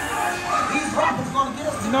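Recorded dogs barking and yipping in a short run of calls from a dark ride's soundtrack, with music and voices under them.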